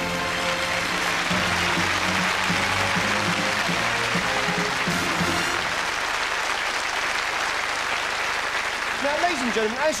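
Theatre audience applauding over live band music. The music stops about halfway through and the applause carries on.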